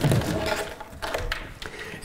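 A plywood panel on a raised wooden platform being lifted open: a thunk as it comes up, then several light wooden knocks and scrapes.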